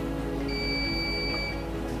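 Kett FD720 moisture analyzer giving one steady high-pitched electronic beep, a little over a second long, as it powers up, over background music.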